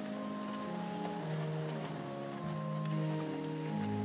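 Church organ playing soft, sustained chords, the held notes changing every second or so.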